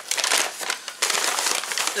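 A plastic shopping bag crinkling and rustling as items are pulled out of it, louder from about a second in.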